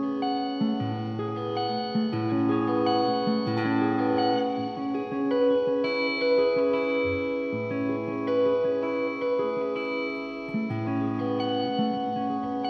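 Strandberg Boden Classic 8 eight-string electric guitar with its stock Classic-series pickups, played through an amp: a riff of ringing, overlapping notes over a low bass note that comes back every couple of seconds.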